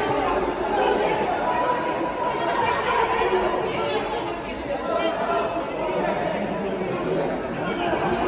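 Several people talking and calling out at once: an unbroken, indistinct chatter of voices around a boxing ring during a bout.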